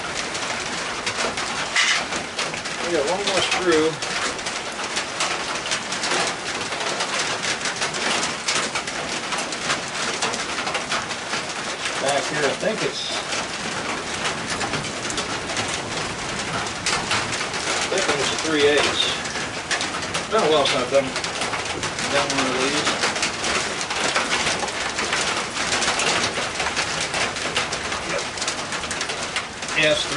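Pigeon cooing in short, low, wavering phrases every several seconds, over a steady background hiss.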